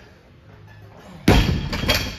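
A plate-loaded wooden strongman log dropped from overhead onto the floor, landing with a loud crash a little past halfway, followed by a second clank as it bounces and the plates settle.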